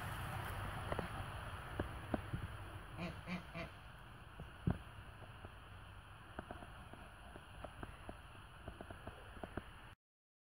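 Light rustling and small snaps of lemon-tree leaves and twigs as hands handle them, over a soft outdoor background. About three seconds in, an animal gives three short calls in quick succession.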